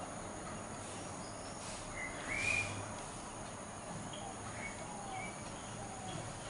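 A few short bird chirps, the loudest about two and a half seconds in, over a steady low hum and faint background noise.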